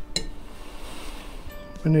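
A single light clink of a fork on a china plate just after the start, over faint background music; a man's voice comes in at the very end.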